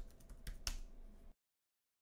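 Faint typing on a computer keyboard: a few key clicks, then the sound cuts off to dead silence a little past halfway.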